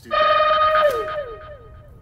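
Electric guitar through an effects unit: one loud held note that slides down in pitch about a second in, its echoing repeats fading away.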